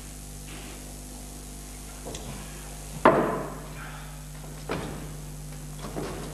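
A few knocks over a steady low hum: one sharp, loud knock about three seconds in, with fainter ones about two seconds in and near five seconds in.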